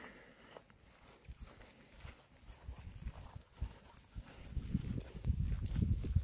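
Wind buffeting the microphone: low, irregular rumbling thumps, fainter at first and growing louder over the last second and a half.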